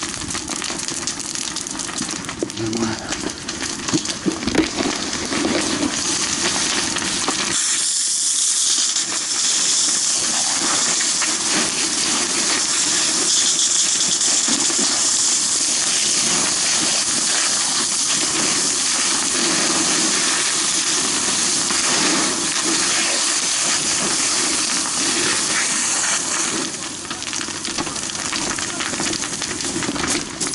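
Fire hose nozzle spraying a jet of water onto a burning wooden house, a loud steady hiss that starts about seven seconds in and cuts off a few seconds before the end. Scattered crackles and knocks come before it.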